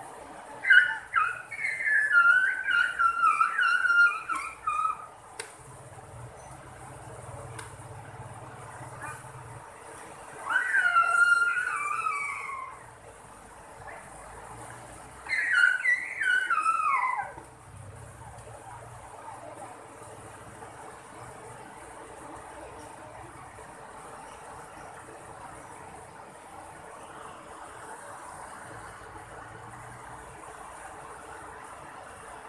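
Steady rush of river water, broken by three bouts of loud, high-pitched calls that slide down in pitch: a run of short falling notes lasting about four seconds at the start, a single rising-then-falling call about ten seconds in, and a few quick falling notes about fifteen seconds in.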